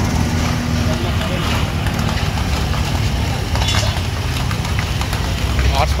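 Busy street noise: a steady low rumble of idling vehicle engines and traffic, with faint voices in the background.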